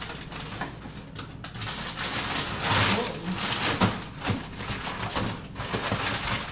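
Rustling and knocking of kitchen items being handled as ingredients are gathered: a run of knocks and clatter, with a rustle that swells about two to three seconds in.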